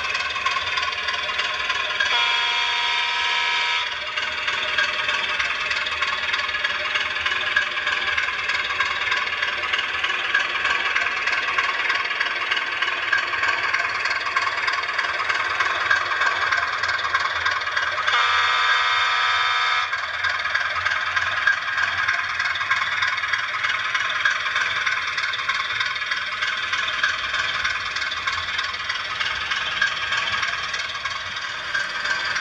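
Sound decoder of an H0-scale model of a Czech class 751 'Bardotka' diesel locomotive playing a running diesel engine through its small speaker as it hauls a freight train. Two horn blasts of about two seconds each sound, about two seconds in and again about eighteen seconds in.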